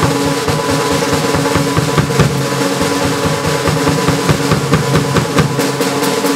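Solo drumming on a Tama acoustic drum kit: a fast, dense, unbroken run of strokes around the drums and bass drum, with cymbals ringing over it.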